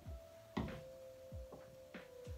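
Quiet background music: a single held electronic note that steps down in pitch about half a second in, with a few soft, deep drum beats underneath.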